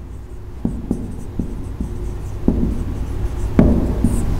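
Marker pen writing on a whiteboard: a series of short separate strokes and taps of the nib, the sharpest one near the end, over a steady low room hum.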